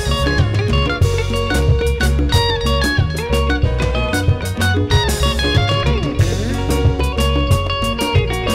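A live band playing a dance number with no singing: a busy electric guitar line over bass guitar, drum kit and congas, with a steady beat.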